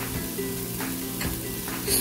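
Onion-tomato masala frying in an Instant Pot's stainless steel inner pot: a soft sizzle with a few faint crackles, under background music with steady held notes.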